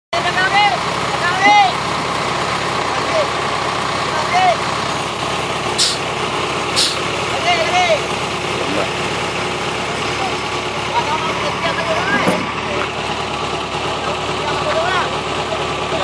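Truck-mounted crane's engine running steadily while a pole is being raised, with people calling out over it.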